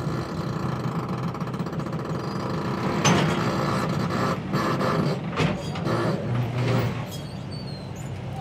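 An engine hums steadily, and from about three seconds in clattering and clanking knocks come in over it.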